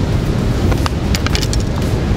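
Steady wind rumble on the microphone over breaking surf. About halfway through there is a quick run of small sharp clicks from a knife cutting an octopus tentacle against a plastic cutting board.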